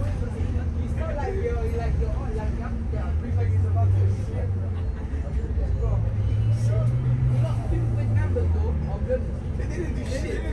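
Low engine rumble of a double-decker bus heard from inside on the upper deck as it pulls up and comes to a stop. Its pitch rises and then falls about six to eight seconds in. Passengers are talking in the background.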